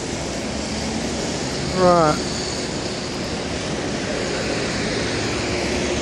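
Steady noise of busy city road traffic, growing slightly louder toward the end as a red double-decker bus comes alongside.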